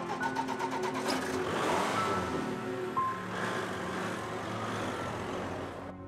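Soft background music over a car driving slowly on a cobbled street, its engine and tyre noise swelling in the middle and fading away.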